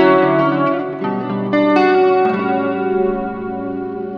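Electric guitar, a Fender Stratocaster, played clean through an Axe-FX III with the distortion's drive at zero. Chords are struck about a second in and again just under two seconds in, then left to ring and fade.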